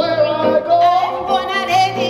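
Live gospel singing with held and gliding vocal notes over electronic keyboard accompaniment.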